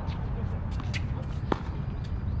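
Tennis racquet striking the ball: one sharp pop about one and a half seconds in, after a few fainter ticks, over a steady low rumble.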